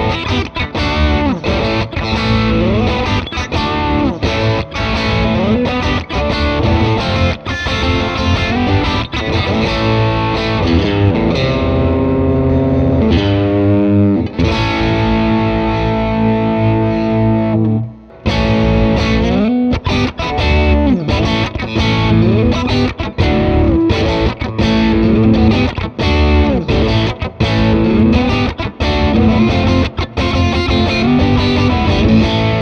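Squier Debut Stratocaster electric guitar played with distortion in a chord-driven riff. Past the middle a chord is held for a few seconds, then the playing breaks off briefly and picks up again.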